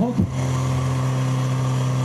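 Portable fire pump's engine running steadily, holding one constant note.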